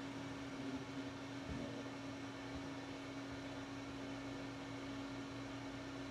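Quiet room tone: a steady low hum over faint hiss, with a soft bump about a second and a half in.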